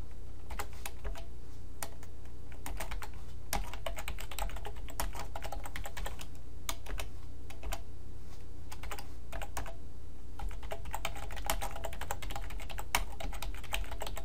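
Typing on a computer keyboard: keystrokes in quick, irregular runs with short pauses, over a steady low hum.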